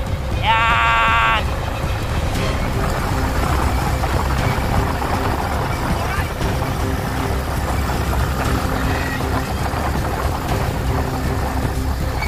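A motorcycle engine running, with heavy wind rumble on the microphone. A brief pitched call, rising and then held, sounds in the first second and a half.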